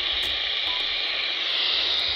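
Steady radio static hiss from a Quansheng UV-K5 handheld's speaker while it receives on 144.150 MHz in its modded sideband mode.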